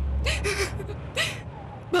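A woman sobbing on the phone: sharp, breathy gasps with short whimpering cries in between. A low rumble sits under the first second.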